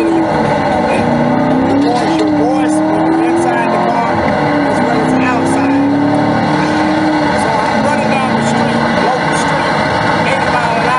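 Chevrolet Corvette Grand Sport's 6.2-litre V8 accelerating up through the gears, the engine note climbing and then dropping at each of three upshifts before it settles into a steady cruise near the end. It is heard as the playback of a recorded drive on the car's video recorder.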